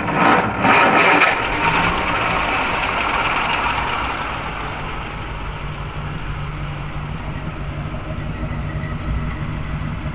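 A 1936 Cord 810's Lycoming flathead V8 starting up. It is loudest for the first second or two, with a few sharp bursts, then settles into a steady idle.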